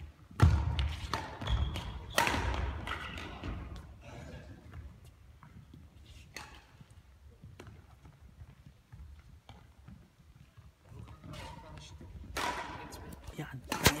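Badminton rally in a large echoing sports hall: sharp racket strikes on the shuttlecock and players' footfalls thudding on the court floor, the two loudest about half a second and two seconds in. The rally then stops, and voices are heard near the end.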